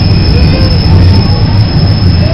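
Toronto subway train running through a tunnel, heard from inside the car: a loud, steady rumble of wheels on rails with faint, thin squealing tones above it.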